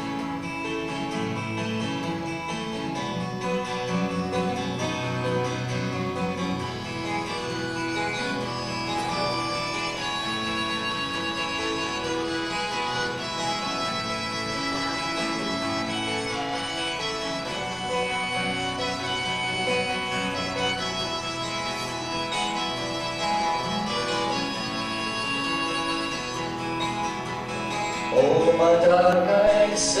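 Twelve-string acoustic guitar strummed together with a harmonica played in a neck holder: the instrumental introduction to a folk song. A man's singing voice comes in near the end.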